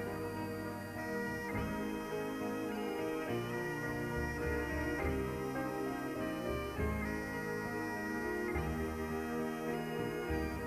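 Scottish Highland bagpipes playing a slow air: a chanter melody of long held notes over the steady drones. A band's keyboard and bass play low, slowly changing accompaniment underneath.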